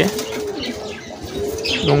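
Domestic pigeons cooing in a cage, a long low drawn-out coo, with a short flutter of wings at the start as a hand pushes one bird aside.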